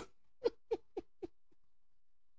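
A man chuckling quietly: about six short laugh pulses, roughly four a second, growing fainter and dying away within the first second and a half.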